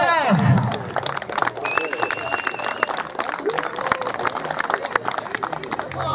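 Crowd applauding, many hands clapping steadily, just after an amplified announcer's voice trails off at the start.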